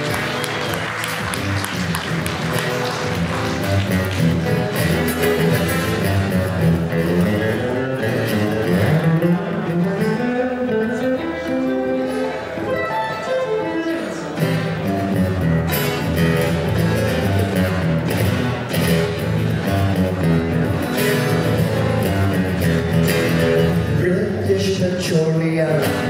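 Solo acoustic guitar playing an instrumental passage, a continuous run of picked and strummed notes with no singing.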